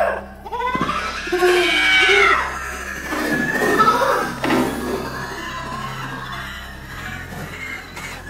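A woman screaming and shrieking in fright over a music track, the screams loudest in the first few seconds and dying away after about five seconds.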